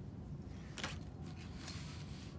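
Paper sketchbook being slid and shifted by hand on a table, with two short papery rustles: a louder one just before a second in and a weaker one near the end.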